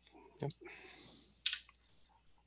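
A sharp click about one and a half seconds in, made on the computer as the presentation is advanced to the next slide. Before it come a short spoken "yep" and a soft hiss.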